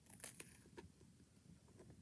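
Near silence, with a few faint crunches in the first second as a person bites into a graham-cracker s'more and chews.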